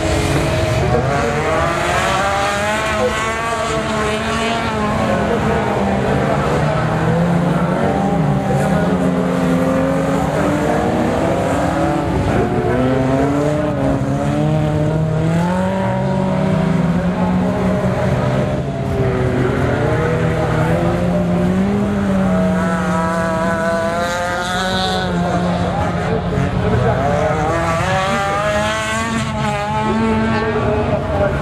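Several old saloon cars racing on a dirt track, their engines revving up and down as they accelerate and lift off, many engine notes overlapping.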